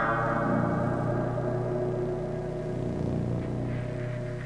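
Improvised drone music from electronic oscillators and a tabletop guitar: a low, steady drone with a few held tones beneath it. Over the drone, a bright ringing tone fades away over the first couple of seconds.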